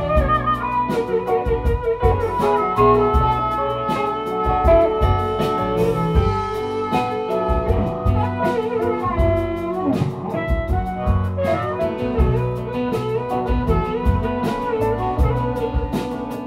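Live blues band playing a slow minor blues, with a blues harmonica taking an instrumental solo of bent, wavering notes over upright bass, drum kit, guitar and keyboard.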